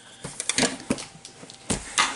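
Packaging being handled: light rustling with a few scattered sharp knocks and clicks, the loudest knock near the end.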